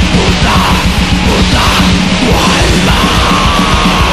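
Extreme metal recording: distorted guitars and fast, dense drumming under harsh yelled vocals, loud and unbroken.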